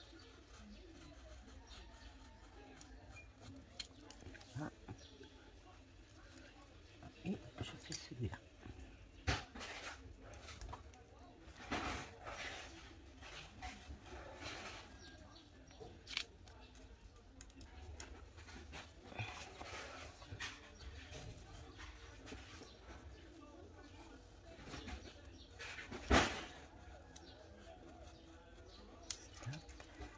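Pen-style craft knife scoring and cutting thin paper in short scratchy strokes, with scattered sharp clicks, the loudest about 26 seconds in. A faint voice can be heard in the background at times.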